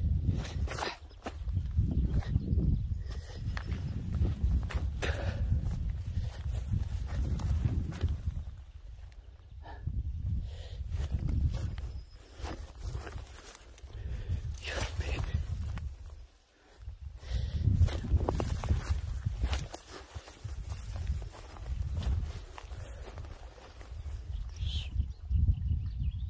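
Low wind rumble on the microphone, rising and falling in gusts, with scattered light clicks and rustles of footsteps through brush.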